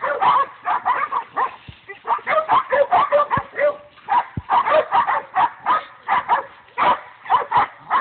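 Young hunting dogs baying a hog: rapid, repeated barking in runs of several barks a second, with short breaks between runs.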